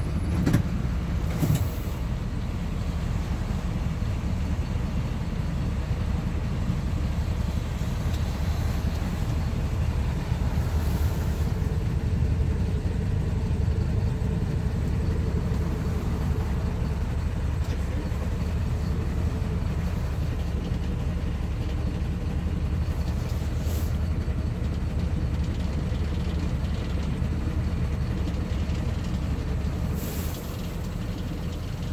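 Plaxton Beaver 2 minibus's diesel engine running with a steady low rumble, heard from inside the passenger saloon, with a couple of short knocks about a second in.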